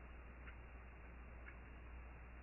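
Near silence: faint, short ticks about once a second over a low steady hum of room tone.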